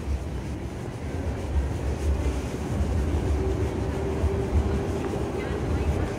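Pedestrian-street ambience with a low, fluctuating rumble of wind on the microphone and passers-by talking. A faint steady hum enters about halfway.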